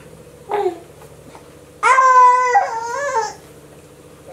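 A baby's voice: a short sound about half a second in, then a loud, high-pitched wail lasting about a second and a half that starts near two seconds in and wavers towards its end.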